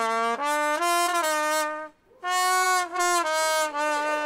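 Trumpet played solo: two short phrases of held notes stepping up and down between a few pitches, with a brief break about two seconds in.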